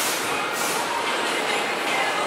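Steady machinery noise of a screen-printing shop floor: an even rushing noise with faint steady tones running under it.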